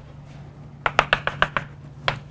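Chalk tapping against a chalkboard as a dashed line is drawn: about six quick, sharp taps in under a second, starting about a second in.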